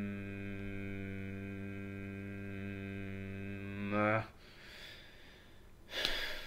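A man humming a long, steady "hmmm" while thinking, the pitch sinking slightly, cut off about four seconds in. Faint breathing follows.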